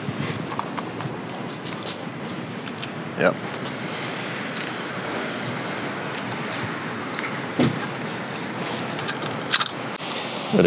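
Steady city street background noise, an even hiss of distant traffic, with a few short clicks near the end.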